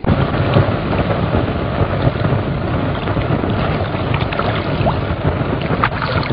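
A steady rushing noise of stormy wind and water from an old cartoon soundtrack, starting suddenly with the cut to the shore scene.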